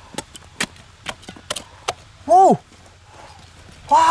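Small hand shovel chopping and scraping into dry, stony soil in irregular sharp strikes, with loose dirt falling. A man's short exclamation about two seconds in is the loudest sound, and another starts at the very end.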